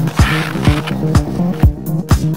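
Electronic dance music, a deep techno dub mix: a steady four-on-the-floor kick drum at about two beats a second under a looping bass line. A hissing noise swell rises just after the start and fades away by about a second and a half in.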